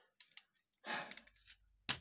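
Faint plastic clicks from a Takara Unite Warriors Bonecrusher transforming figure being worked by hand, with a short breathy sigh about a second in and a sharper click near the end.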